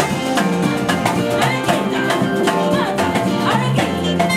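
Live church worship band playing: electric guitars, drum kit and keyboard, with a woman singing into a microphone.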